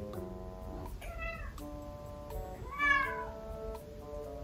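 A kitten meowing twice, high-pitched, at a closed door, calling to another cat on the far side; the second meow, near three seconds in, is the louder. Light background music with plucked notes plays throughout.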